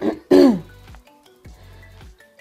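A man clears his throat once, a short sound with a falling pitch. Faint steady tones follow.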